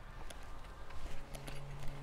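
Quiet background with a few faint, short taps, and a low steady hum that comes in past the middle.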